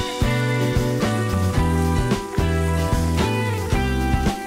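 Instrumental background music, with notes changing several times a second over a low bass line.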